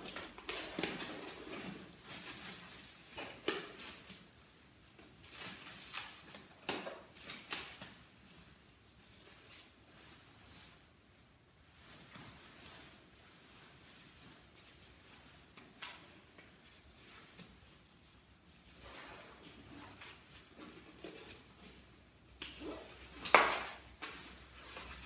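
Rustling and crinkling of a disposable protective coverall and disposable gloves as the gloves are pulled on and worked over the sleeve cuffs, in irregular bursts with quiet spells between, the loudest rustle coming near the end.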